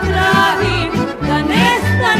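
Serbian folk (narodna) music from an accordion-led ensemble, with melody lines over a steady bass rhythm of alternating low notes.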